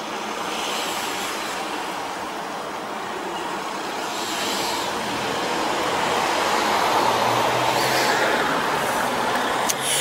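Road traffic noise: a motor vehicle passing on the road, its engine and tyre noise slowly swelling to a peak about seven to eight seconds in before easing a little.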